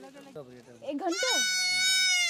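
A goat kid bleating: one long, loud, high-pitched bleat starts about a second in, after fainter, wavering bleats from the herd.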